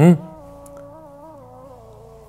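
Soft background melody of a hummed or wordless voice, holding and gently shifting its notes. A brief loud burst of a man's voice sits at the very start.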